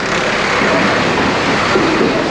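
Steady rushing noise of a bulk tanker truck rolling past close by, its tyres and engine blending into one even roar without breaks.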